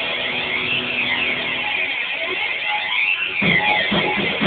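Heavy rock band playing live: a sparser passage of distorted electric guitar without the drum beat, then the drums and full band come back in about three and a half seconds in.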